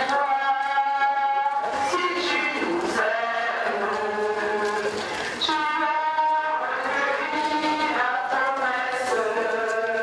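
Voices singing a slow religious hymn, with long held notes.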